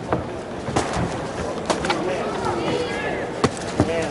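Boxing gloves landing punches: five sharp smacks, two of them close together near the end, over arena crowd noise with voices calling out.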